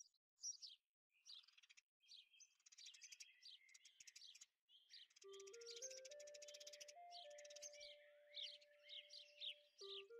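Faint background soundtrack of recorded birdsong: quick, high chirps. About five seconds in, a slow, gentle melody of single held notes stepping upward joins them.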